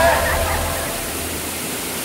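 Steady rushing of water falling down a mossy rock cascade, heard as an even wash of noise once the music fades out at the start.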